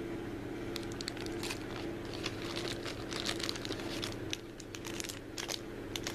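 Thin clear plastic packaging bag crinkling in the hand, a run of irregular crackles.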